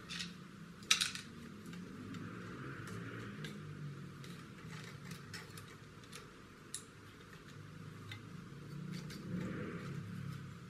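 Plastic model-kit parts and a plastic bottle being handled and fitted together: scattered light clicks and rattles, with one sharper click about a second in.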